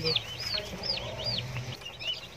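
Three-day-old baladi and Fayoumi chicks peeping in a brooder: a quick string of high peeps, each rising then falling in pitch, thinning out in the second second.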